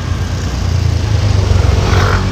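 A motor vehicle engine running steadily with a low hum, under a wash of road and traffic noise.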